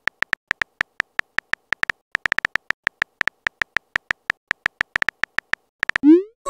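Simulated phone-keyboard typing sounds: a rapid, uneven run of short, high-pitched clicks, one for each letter typed into a text message.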